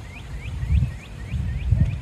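A bird calling a rapid series of short rising notes, about five a second, over an irregular low rumble.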